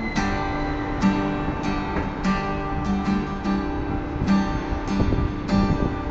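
Epiphone EJ-200 jumbo acoustic guitar strummed solo in a steady rhythm, about two strums a second, its chords ringing on between strokes.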